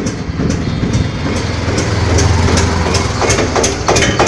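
Swaraj 744 XM tractor's three-cylinder diesel engine idling with a steady low hum, with small clicks and rustle over it.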